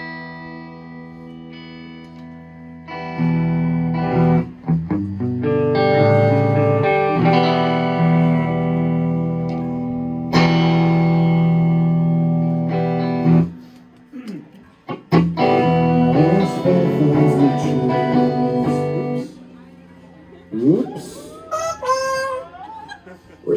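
Indie rock band playing live with electric guitars, bass and drums. A soft held chord opens out into loud full-band playing about three seconds in, breaks off briefly in the middle, and stops about three seconds before the end. Then comes a quieter stretch with a rising pitch as a guitar string is retuned.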